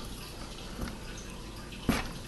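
Soft handling knocks as things are set into a padded carrying case with foam dividers: a faint knock just under a second in and a louder, sharper one near the end, over a steady background hiss.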